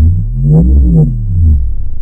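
Electronic outro music: a pulsing synthesizer sound with pitch sweeps gliding up and down across each other in the middle.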